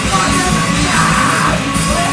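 Punk rock band playing live and loud: bass guitar, guitar and drums, with yelled vocals that are loudest between about one and one and a half seconds in.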